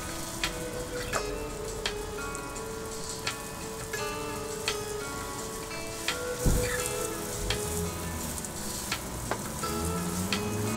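Garden hose spray nozzle hissing steadily as a jet of water rinses a wooden clad house wall clean after washing, under quiet background music.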